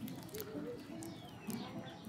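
Quiet outdoor background with a few faint, short low notes near the start and a faint falling whistle in the second half.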